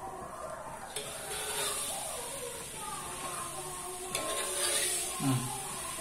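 Spoonfuls of peyek batter with peanuts poured into hot frying oil in a wok, setting off a sizzling hiss that starts suddenly about a second in and swells again with another spoonful a few seconds later.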